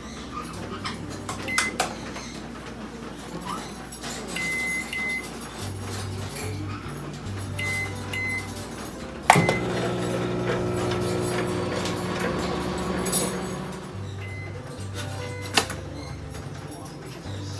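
Microwave oven control panel giving short, high electronic beeps, single and in pairs, as its buttons are pressed and its dial is turned. About nine seconds in comes a sharp click, and the oven starts running with a steady electrical hum for several seconds. Soft background music plays underneath.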